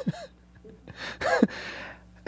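Brief laughter after a joke: two short, breathy laughs, one at the start and one a little past the middle.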